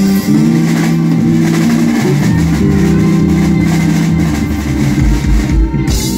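Live blues band playing loud: electric guitar, bass guitar and drum kit, with a run of heavy drum hits near the end.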